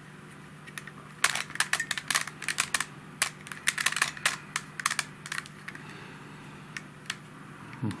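Helicopter Cube's plastic edge pieces clicking in quick, irregular runs as the edges are twisted to scramble the puzzle. The clicking is busiest from about a second in until about five and a half seconds in, then thins to a few soft clicks.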